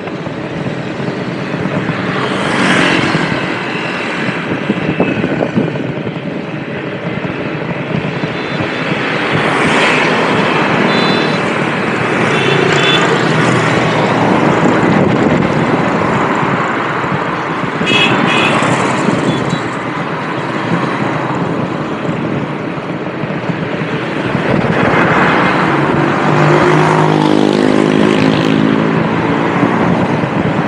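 Road traffic heard from a moving vehicle: a steady rush of road noise, swelled by vehicles passing about three, ten, eighteen and twenty-five seconds in. A low engine note comes through near the end.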